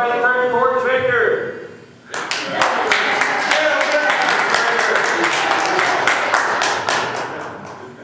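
A congregation applauding, many hands clapping with some voices mixed in, starting about two seconds in after a few words from a man and dying away just before the end.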